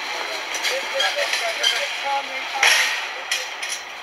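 Muffled, indistinct voices of people on the move over a steady hiss, with a sharp clack about two and a half seconds in and a smaller one shortly after.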